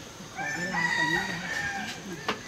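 A rooster crowing once, a single drawn-out call starting about half a second in and lasting about a second and a half.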